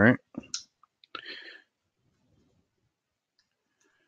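A few soft computer keyboard keystrokes as a terminal command is edited and entered: a couple of short clicks near the start, then a longer soft press about a second in.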